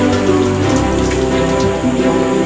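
Water from a bathroom tap splashing into a washbasin under a film score of sustained chords.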